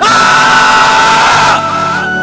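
A man's loud anguished yell lasting about a second and a half, over background music with a sustained flute-like note.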